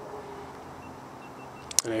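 GoPro Hero 3 Black's stop-recording beeps, heard faintly from about 50 yards away: three short, high tones in quick succession about a second in, over a steady background hum.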